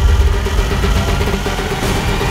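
Film trailer sound design: a loud, continuous deep rumble with a steady pulsing tone above it, engine-like in character.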